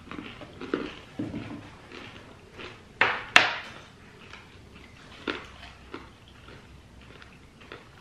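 Mouth-close chewing of crunchy dry granola-style cereal (almonds, whole-grain flakes and pumpkin seeds), a scatter of small crackling crunches. Two sharp clicks a fraction of a second apart about three seconds in are the loudest sounds.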